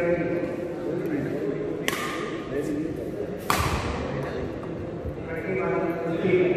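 Badminton racket striking a shuttlecock twice, about a second and a half apart, each a sharp smack that echoes in a large hall; the second hit is the louder. Voices of people talking are heard at the start and again near the end.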